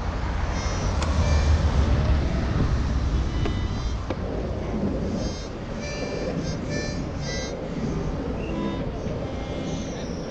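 Surfskate wheels rolling on asphalt with wind on the microphone: a steady low rumble, louder in the first half. A few sharp clicks sound over it, and thin high tones come and go near the middle.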